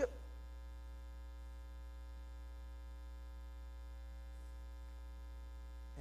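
Steady electrical mains hum with a thin buzz of many evenly spaced overtones above it.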